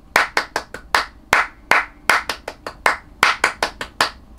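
Two hands clapping the 3+3+2 rhythm of a two-bar riff, taken slowly and subdivided into eighth notes: "one and two and three, one and two and three, one, two". The claps come as a quick run of sharp claps in an uneven, repeating pattern.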